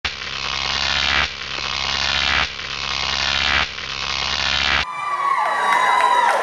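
A video intro sound effect: a dense, noisy sound that swells and cuts off, four times in a row, each about a second long. Near the end it gives way to live concert-hall sound, with a gliding voice over the room.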